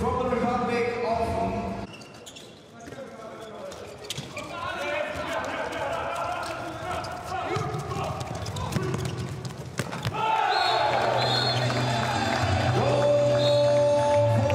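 A handball bouncing on an indoor court floor, with players' voices shouting during play. About ten seconds in, louder music with sustained notes comes in.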